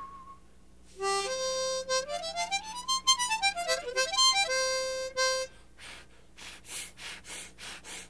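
Harmonica playing single notes with a puckered mouth, the pucker-up-and-blow method: a held note, then a run stepping up note by note and back down, ending on the same held note. A string of short breathy puffs follows near the end.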